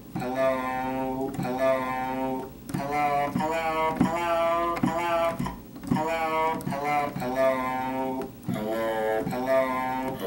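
Recorded spoken 'hello' sample played back by an Arduino Audio Hacker shield, retriggered note after note from a digital piano over MIDI. The sample is sped up for higher keys and slowed for lower ones, so the word sounds at a different pitch on each note, with short breaks between phrases.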